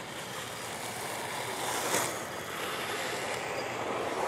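Skate wheels rolling on asphalt: a steady rushing noise that swells briefly about halfway through.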